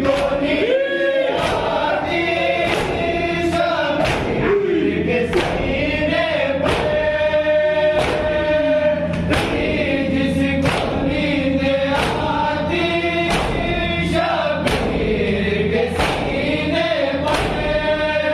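A group of men chanting an Urdu noha (Muharram lament) in unison, led by a reciter, while beating their chests in matam in time. The beats fall about every three-quarters of a second, with brief gaps between verses.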